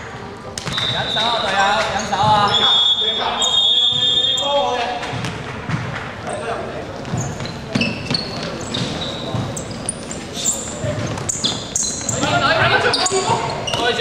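A basketball bouncing on a hardwood gym floor during play, with sneakers squeaking in short high squeaks, echoing in a large sports hall.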